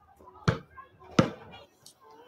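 A basketball bouncing twice on a concrete path, about 0.7 s apart, with sharp slaps.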